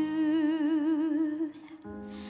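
A woman holds a long wordless sung note with vibrato over soft accompaniment. The note fades out about a second and a half in, leaving a low held accompaniment tone.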